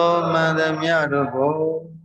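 A man's voice chanting a Buddhist recitation in one long, drawn-out intoned phrase, its pitch held and gliding. It dips in pitch and fades out near the end.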